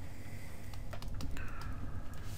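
Stylus tapping and scraping on a tablet surface as a word is handwritten: a run of light, irregular clicks.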